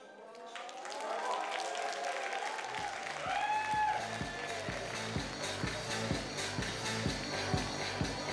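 Audience applauding in a hall; about two and a half seconds in, music with a steady low beat of about three beats a second starts under the clapping.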